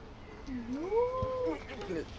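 A man's single drawn-out strained vocal sound, rising in pitch and then held for under a second: the effort of trying to pull up while hanging upside down from a pull-up bar.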